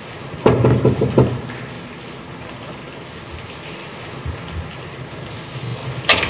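Steady hiss of an old 1930s film soundtrack, with a short louder sound between about half a second and a second in.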